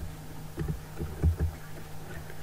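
A few soft computer-keyboard keystrokes, heard as dull low taps, over a steady low electrical hum.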